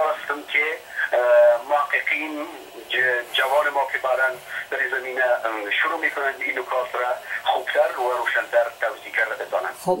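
Continuous speech heard over a phone-quality line: the voice sounds thin, with no high end. Right at the end a fuller, nearer voice breaks in with 'khob'.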